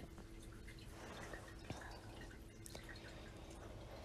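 Quiet room tone between spoken sentences: a faint steady hum with a single soft click near the middle.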